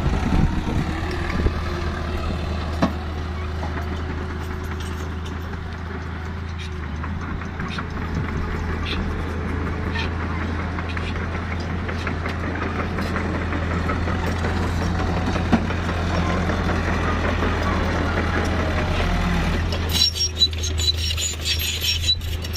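Loaded light dump truck's diesel engine running steadily at low speed as the truck crawls over rough, muddy ground. Sharp metallic clinks and rattles come in near the end.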